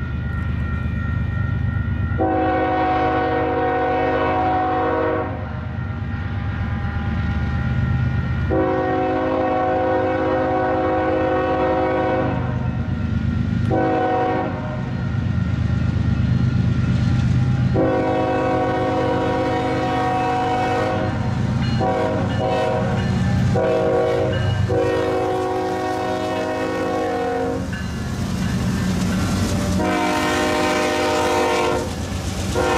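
Union Pacific freight diesel locomotives blowing a multi-chime air horn for a grade crossing: two long blasts, a short one, a long one, then several more, over the heavy rumble of the engines pulling under power as the train gets its load moving.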